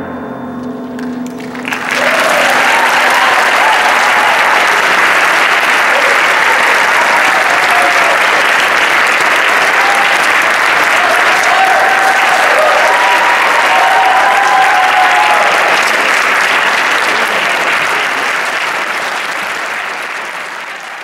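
A percussion ensemble's final notes ring and fade, then about two seconds in the audience breaks into sustained applause, with some cheering in the middle.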